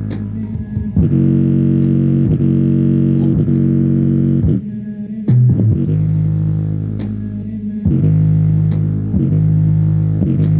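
Bass-heavy music played loud through a JBL Charge 4 portable Bluetooth speaker: long held deep bass notes that change pitch every second or so, with sharp clicks between them and a brief dip about five seconds in.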